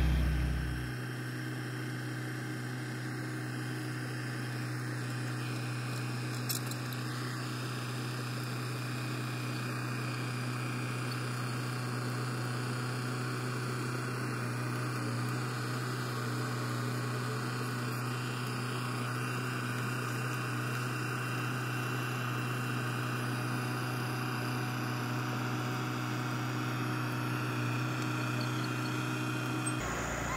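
John Deere 450H crawler dozer's diesel engine running with a steady, even drone as it knocks down trees.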